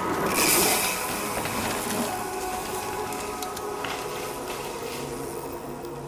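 Mountain bike riding along a dirt woodland trail: tyres rolling on the dirt with a steady whirring buzz, and a few short knocks, one about four seconds in.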